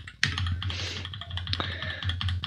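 A run of keystrokes on a computer keyboard, with irregular clicky taps over a steady low hum.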